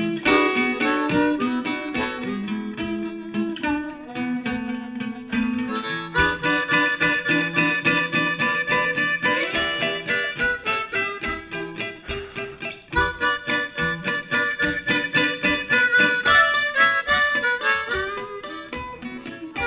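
Blues harmonica taking an instrumental break over electric blues band backing with guitar. It starts on low held notes, then moves into fast, high phrases about six seconds in.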